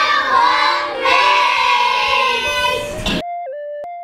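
A group of children singing together, cutting off suddenly about three seconds in. A few soft, steady electronic tones follow, stepping in pitch.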